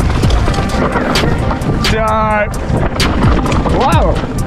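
Mountain bike descending a rough dirt singletrack at speed: a steady rush of tyre and wind noise on the helmet-camera microphone, broken by frequent sharp clattering knocks from the bike over roots and bumps. A brief steady buzzing tone comes about two seconds in.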